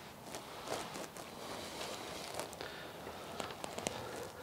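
Quiet footsteps and clothing rustle of people moving across a carpeted floor, with a few faint scattered clicks.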